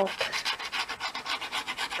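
Nozzle of a plastic squeeze bottle of craft glue dragged along the edge of a cardstock box while laying a line of glue: a rapid, even run of small scrapes, about ten a second.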